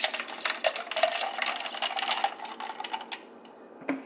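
Juice being poured from a plastic bottle into a plastic tumbler, with a run of small clicks and knocks; the pour stops about three seconds in.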